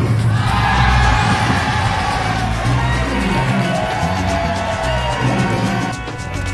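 Background music with a steady beat, and a crowd cheering and yelling over it that starts at once and dies down near the end.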